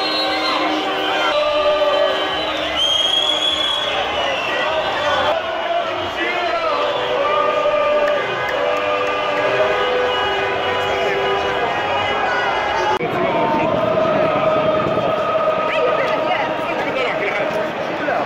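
A street crowd of protesters chanting and cheering, many voices together with drawn-out, sung-out syllables. The sound changes abruptly about five and thirteen seconds in.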